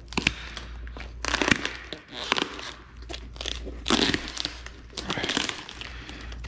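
Clear plastic wrapping crinkling and tearing as it is pulled and peeled off a cardboard box by hand, in several uneven bursts with the loudest around the middle and near the end.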